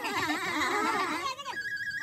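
Several people's voices talking over one another. About one and a half seconds in they drop away, leaving a faint steady high tone.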